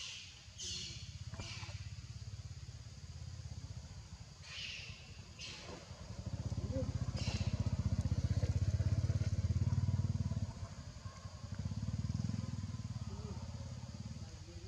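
Low rumble of a running engine, growing louder about six seconds in and again about twelve seconds in, with a few short hisses over it in the first half.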